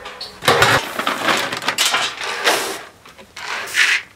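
Horse feed pellets poured into a rubber feed pan: a rattling, hissing pour of about two seconds, then a few shorter rattles near the end.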